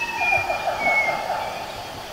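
Forest bird calling: a wavering, quickly trilled whistle with a thinner higher note above it, fading near the end.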